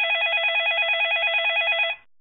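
Electronic telephone ringer trilling: one continuous ring that warbles rapidly between two pitches and cuts off abruptly near the end.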